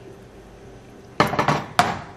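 A metal skillet set down on a gas stove's grate, clattering sharply a little past a second in, with a second knock just before the end.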